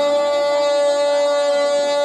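A male singer holding one long, steady note into a microphone, through a PA, without a break.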